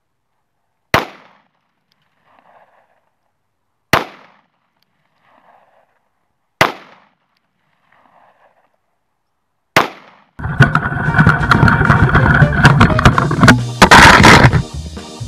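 Four single shots from a Taurus 856 .38 Special revolver, spaced about three seconds apart, each sharp crack followed by a short echo. About ten seconds in, loud music starts.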